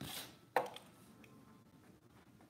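Corrugated cardboard rasping briefly, then snapping sharply about half a second in, as a cut puzzle-shaped piece is worked loose from the sheet by hand.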